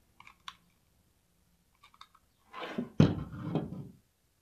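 Craft-table handling while burlap is glued onto a glass mason jar: a few faint clicks, then a rustle and a sharp thunk on the tabletop about three seconds in, as the hot-glue gun is moved aside and the burlap is pressed down.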